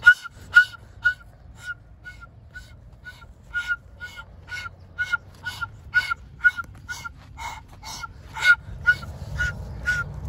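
A steady run of short honks, about two a second, each with a slight bend in pitch and varying in strength. The loudest come right at the start and about eight and a half seconds in, over a low background rumble that grows near the end.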